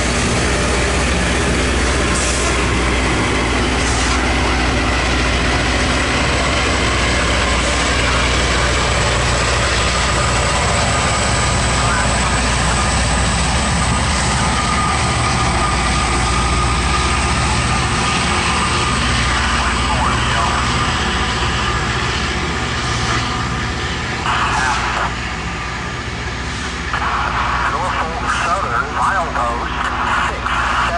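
Loram rail grinder working as it passes, its grinding stones on the rail giving a loud, steady grinding rush with a thin high whine over it. It eases off in the last several seconds as the train draws away, the sound turning choppier near the end.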